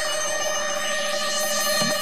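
A steady electronic tone held at one pitch, with a hiss swelling in the second half.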